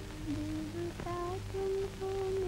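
Slow film background-score melody: long held notes that step to a new pitch every half second or so, over a low steady hum.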